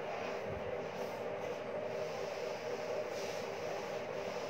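A steady background hum with a couple of faint held tones, and faint rubbing as a chalkboard is wiped clean.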